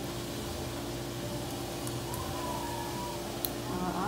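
Quiet room tone with a steady electrical hum, a faint held tone for about a second midway, and a couple of faint ticks.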